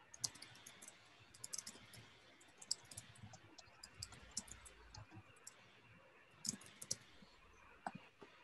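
Faint computer keyboard typing, sharp key clicks coming in short irregular bursts with pauses between.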